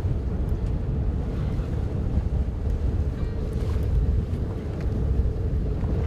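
Steady low rumble of a fishing boat at sea with a constant hum, wind buffeting the microphone.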